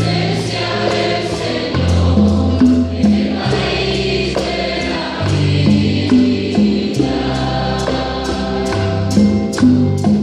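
Church music group singing a Spanish-language hymn with instrumental accompaniment: sustained low bass notes that change every second or so under the voices, and light high percussion ticking along with the beat.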